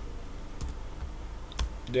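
A few separate key presses on a computer keyboard, single clicks spaced out rather than continuous typing.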